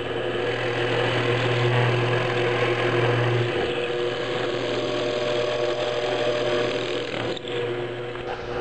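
Drill press running, its bit boring a face-dot position marker hole into a wooden guitar neck: a steady motor hum under the noise of the bit cutting wood. The lowest part of the hum drops out about three and a half seconds in.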